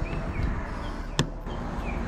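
J1772 charging connector being pushed into a car's charge port, seating with a single sharp click about a second in.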